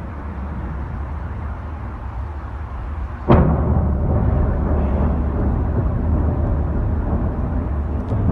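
Distant cruise-missile explosion: a sudden boom about three seconds in, reaching the microphone seconds after the blast is seen because it was filmed from far away, then a rolling rumble that goes on. A steady low rumble lies under it before the boom.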